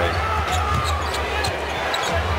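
Basketball being dribbled on a hardwood arena floor, under general game noise and a steady low hum.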